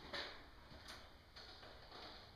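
Nearly silent empty room with a few faint footsteps on a bare floor, about half a second apart.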